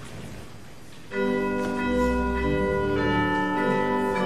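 Instrumental introduction to a hymn, starting about a second in with sustained chords that change every second or so.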